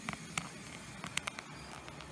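A few light, sharp clicks and taps, scattered through a quiet room.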